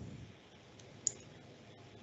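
A single short, sharp click about a second in, over faint steady background noise.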